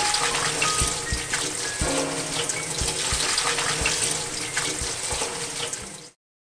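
Cold tap water running steadily into a stainless steel mesh strainer of freshly boiled udon noodles as they are rinsed and worked by hand, chilling them to firm up their texture.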